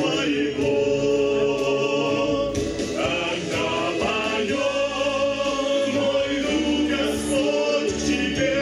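Small Ukrainian vocal ensemble of men's and a woman's voices singing in harmony through a PA, the chords held and moving without a break.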